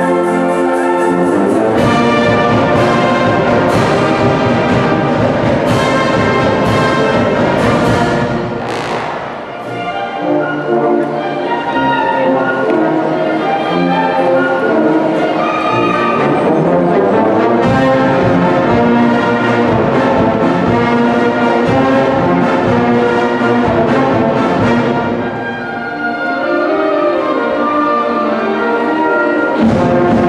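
Wind band playing live, with the brass to the fore and trumpets playing. The music drops back briefly twice, about a third of the way in and again near the end.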